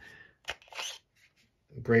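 Fixed-blade dagger drawn from a Kydex-style thermoplastic sheath: one sharp click as the sheath's retention lets go, then a brief sliding rasp as the blade clears the sheath.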